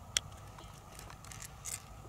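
Freshwater pearl mussel being worked open by hand: a sharp shell click just after the start, a few lighter clicks, and a short scrape of shell near the end.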